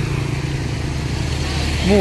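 A motor vehicle driving past close by: a steady low engine hum with road noise that swells and fades. A voice starts right at the end.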